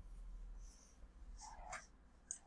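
Near silence: faint room tone, with a faint short sound about three-quarters of a second in.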